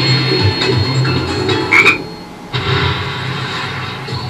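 Bally Wulff 'Baba Jaga' slot machine playing its electronic game sounds during a 100 € feature award, with a repeating low pulsing pattern. A short rising chirp comes about two seconds in, followed by a brief lull before the sounds resume.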